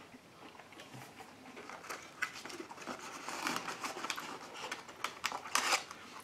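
Light crinkling and clicking of a paper food carton being handled as a fried snack piece is taken out, busier in the second half.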